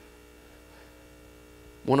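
Steady electrical mains hum with a buzz of several fixed tones, carried through the sound system in a pause between words. A man's voice starts speaking into the microphone just before the end.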